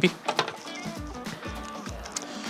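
Soft background music with held tones, under a few light clicks of small parts and packaging being handled.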